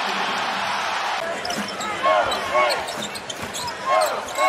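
Basketball arena crowd noise, then, from about a second in, basketball shoes squeaking on the hardwood court about three times in quick chirps while the ball is dribbled.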